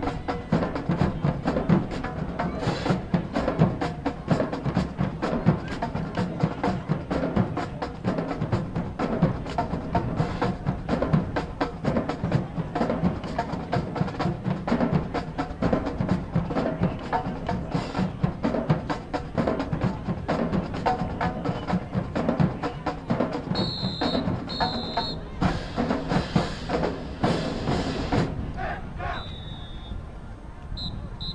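High school marching band playing its show: winds over a busy percussion section with drums, timpani and wood block, played continuously. Short high tones sound a couple of times near the end as the music thins out and fades.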